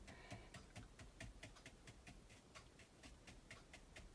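Faint, rapid ticking taps of a soft mop brush dabbed again and again onto a canvas panel, several taps a second, laying on a thin coat of acrylic paint.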